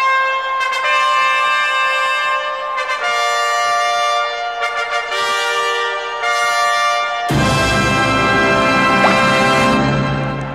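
A brass section plays a fanfare in long held chords that change every second or two after a count-in. About seven seconds in, a louder, fuller chord with heavy low end joins and holds until near the end.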